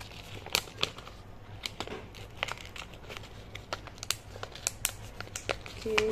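A paper seed packet crinkling and rustling in the hands as tiny seeds are put back into it, with irregular small crackles and clicks.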